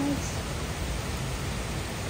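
Steady rain falling on trees and a wooden deck, an even hiss of rainfall.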